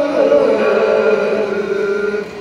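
A group of men chanting shigin (Japanese poetry recitation) in unison, holding one long drawn-out note that slides down shortly after the start and then holds steady.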